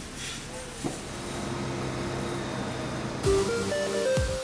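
Steady hiss of water from a fire hose on a burning outdoor storage shed. About three seconds in, a loud falling whoosh opens a short electronic music jingle.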